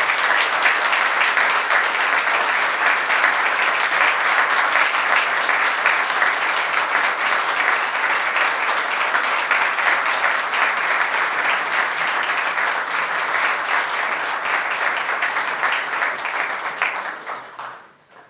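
A large seated audience applauding steadily, the clapping dying away near the end.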